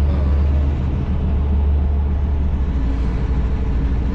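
Steady low drone of a semi truck's engine and road noise heard from inside the cab while driving at highway speed.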